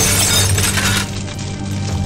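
Cartoon sound effect of window glass shattering: a sudden crash at the start whose crackle fades away within about a second, over background music.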